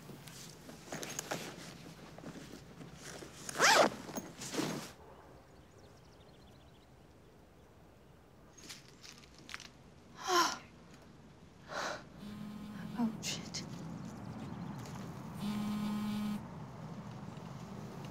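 Zipper of a handbag being opened and its contents rustled, then a sharp intake of breath about ten seconds in. Near the end a low steady buzz comes on twice.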